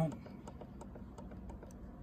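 Faint, scattered clicks of a sewer inspection camera's control-panel buttons being pressed as the digital zoom is stepped, over a faint steady low hum.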